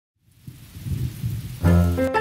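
Animated rain sound effect fading in with a low rumble of thunder, then music starting about one and a half seconds in with a loud low chord.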